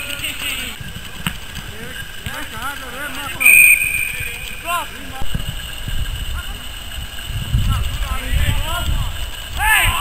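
Football players and onlookers shouting during play, with a short, steady whistle blast, the kind a referee blows, about three and a half seconds in. Wind rumbles on the microphone through the second half.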